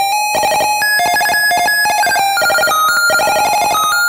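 1-bit PC-speaker chiptune, slowed down with reverb added: a rapid string of short square-wave beeps, with a lower melody line and a higher line stepping up and down against it.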